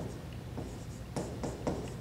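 Hand-writing on an interactive touchscreen whiteboard: a series of short taps and strokes against the screen as a word is written.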